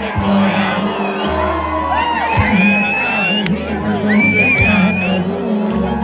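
Live band music played through a concert PA, with a large crowd cheering and letting out high, rising whoops and screams over it.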